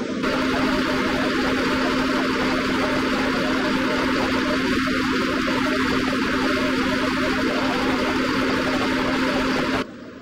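A steady machine hum: one held tone over an even hiss, cutting off suddenly near the end.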